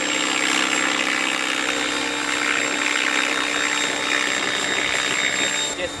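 Align T-rex 700E electric RC helicopter hovering in place under GPS position hold: a steady whine from its motor and rotors, holding an even pitch throughout.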